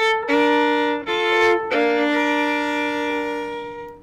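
Solo violin playing slow classical music: a few sustained bowed notes, then one long held note that fades away near the end.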